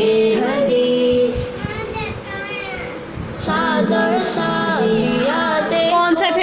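A children's cartoon theme song playing from a computer's speakers: a child's voice sings long held notes over music, dipping softer for a couple of seconds in the middle.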